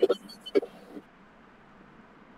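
The tail end of a man's speech with a couple of brief sounds in the first second, then a faint, steady background hiss of room tone.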